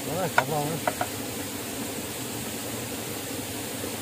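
A short spoken word and a single sharp tap in the first second, then a steady hiss.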